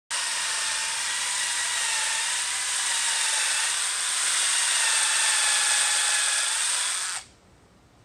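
Cordless drill spinning an abrasive spiral hone inside a carbon-fibre tube, roughening the bore for bonding: a steady whine over a hiss that stops abruptly about seven seconds in.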